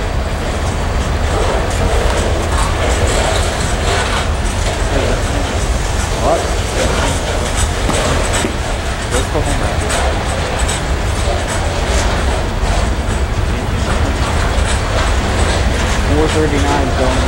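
Freight train of covered hopper cars rolling steadily past, a continuous rumble with wheel clicks over the rail joints.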